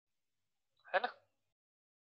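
Silence broken once, about a second in, by a man briefly saying 'hai na' ('right?').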